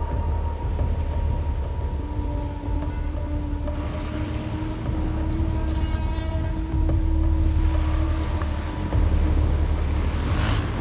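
Heavy rain falling steadily over a deep, continuous low rumble, with held music notes underneath; the sound swells somewhat about seven seconds in.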